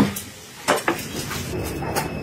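Short metal clinks and knocks of a large cleaver being picked up and handled on a table beside a wooden cutting board, two close together a little under a second in and another near the end.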